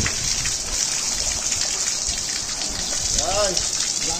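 Water running steadily from the taps of an outdoor multi-tap washing station and splashing into its basin as people wash their hands.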